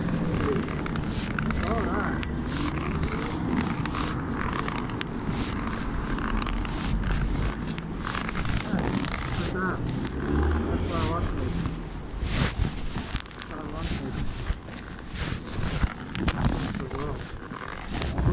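Muffled rustling and rubbing on a covered microphone, with many short clicks and indistinct, muffled voices.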